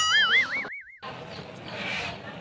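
A cartoon-style "boing" sound effect: a short twangy tone that springs up in pitch and wobbles rapidly, cut off abruptly after under a second, followed by a brief dead silence from the edit and then faint background noise.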